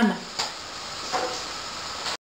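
Aluminium pot lid settling onto the pot with a light knock about half a second in and a fainter tap after a second, over a steady low hiss from the covered pot on the stove.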